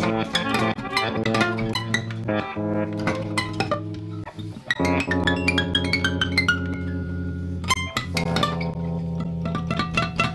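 Two guitars in free improvisation: a dense run of quick plucked notes and sharp string attacks, with low held notes coming in about halfway through and again near the end.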